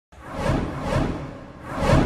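Intro logo sound effect: three whooshes, each swelling and fading, the third and loudest coming near the end and trailing off.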